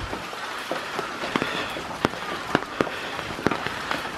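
Steady rain hiss with irregular sharp taps of raindrops, several a second, landing close by.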